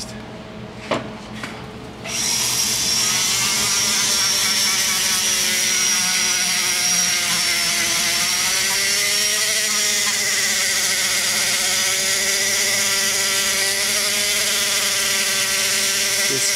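High-speed die grinder with a cartridge sanding roll starting up about two seconds in and running steadily while polishing the rough back side of a cast-aluminium LS cylinder head's exhaust port. Its high whine wavers in pitch a few times as the roll is worked against the port wall.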